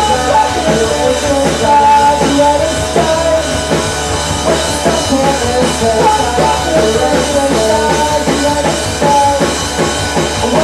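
A small rock band playing live, with acoustic and electric guitars heard loud and full through the venue's PA.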